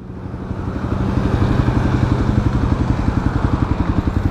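Kawasaki KLX250SF's single-cylinder four-stroke engine running steadily at low revs, its firing pulses coming fast and even; the level rises a little over the first second.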